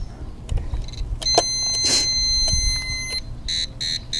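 Cobra power inverter's alarm buzzer sounding as the mini fridge tries to start: a steady high beep about a second in that lasts about two seconds, with a brief rush of noise in the middle, then rapid short beeps, about three a second, near the end. It is the inverter's low-voltage alarm, the sign that the fridge's start-up surge drags the battery and capacitor voltage too low.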